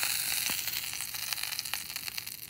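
Hot butter and steak fat sizzling in a carbon steel skillet on the burner, a steady hiss with scattered crackles that slowly dies down.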